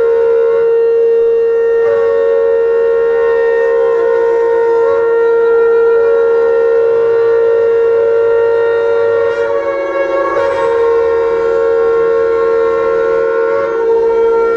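Loud, sustained wind-instrument tones: several steady pitches are held together, wavering briefly about two and ten seconds in.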